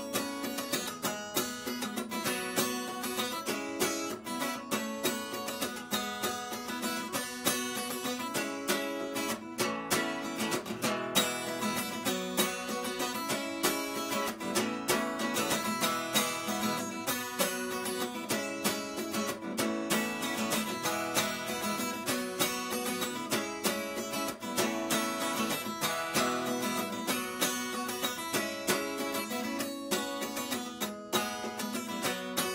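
Solo steel-string acoustic guitar played without singing, a continuous flow of picked notes and strums at an even level.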